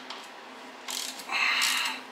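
Hand ratchet wrench clicking as a nut is run down onto an axle bearing retainer bolt, a short burst of rapid clicks starting a little over a second in.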